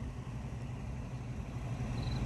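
Steady low hum of an idling motor vehicle engine, with faint background noise.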